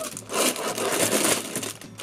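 Cardboard LEGO set box being torn open by hand: a stretch of tearing and scraping lasting about a second and a half.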